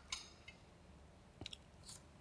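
Near silence: room tone with a few faint short clicks, one near the start and a couple about one and a half seconds in.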